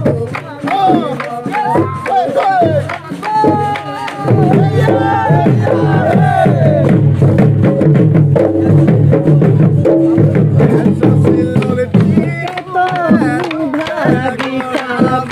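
Several Assamese dhol drums beaten in a fast Bihu rhythm, with a group of men and women singing and shouting Bihu songs over them. The drumming and singing grow louder and fuller about four seconds in.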